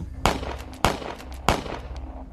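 Gunshots: three loud sharp reports a little over half a second apart, with fainter cracks in between.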